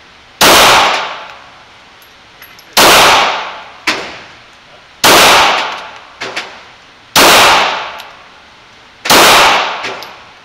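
Glock 17 9mm pistol fired slowly, five single shots about two seconds apart. Each report is very loud and rings out in the reverberant indoor range, with fainter sharp cracks between the shots.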